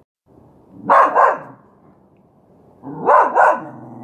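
Miniature schnauzer barking: two quick double barks about two seconds apart, the second pair trailing off into a fainter drawn-out sound.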